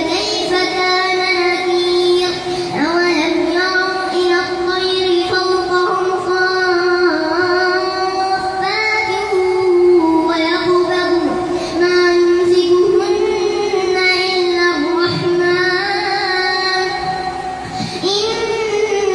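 A boy reciting the Quran aloud in a melodic chant into a microphone while leading congregational prayer as imam. Long held notes with slow, ornamented pitch turns, in phrases of several seconds separated by short breaths.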